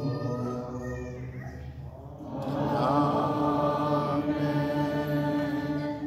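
Liturgical chant in a church: long, held sung notes that swell louder about two seconds in.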